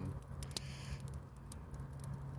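Campfire crackling: scattered sharp pops and snaps, over a low steady hum.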